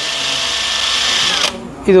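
Cordless impact wrench run free with no load: its motor gives a steady whine with no hammering, then stops about one and a half seconds in.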